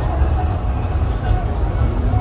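A steady low rumble, with faint voices of people talking over it.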